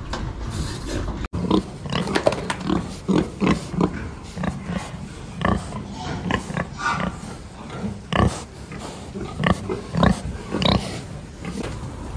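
A pen of domestic pigs grunting, a dense run of short grunts overlapping one after another. The sound cuts out for an instant about a second in.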